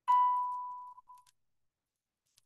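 Computer notification chime: one clear electronic ding that fades out within about a second.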